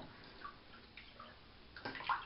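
Faint water in a bathtub stirred by a wooden fishing lure being pulled through it: small drips and gurgles, with a brief slightly louder splash near the end.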